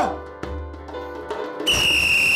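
Background music, then about one and a half seconds in a loud, shrill, steady whistle blast starts and holds.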